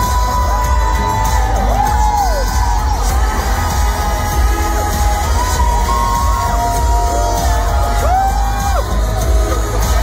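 A live pop song through an arena PA, heard from within the audience: heavy bass under a held melodic line that glides up and down, with the crowd cheering and whooping.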